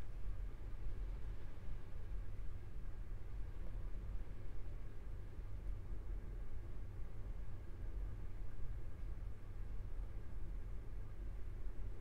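Steady low rumbling noise with a faint hiss and no distinct events.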